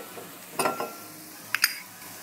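Chopped aromatics and black truffle frying in a non-stick sauté pan, with a steady sizzle. A short knock comes about half a second in, and two quick metallic clinks of a utensil against the pan come about a second and a half in.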